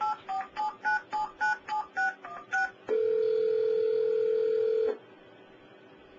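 Telephone touch-tone (DTMF) dialing: about ten quick two-note beeps as an automated phone system dials a number, followed by a steady ringback tone lasting about two seconds as the called line rings.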